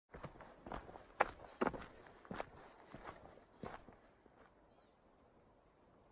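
Footsteps of a hiker walking on a dirt and rock trail, about seven steps in the first four seconds, then stopping. A short high chirp from an animal follows near the end.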